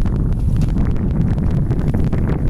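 Wind buffeting the camera's microphone: a steady, fluttering low rumble.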